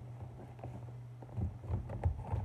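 A cardboard shipping box being handled and turned over while someone looks for a way to open it: a few faint taps and scuffs. A steady low hum runs underneath.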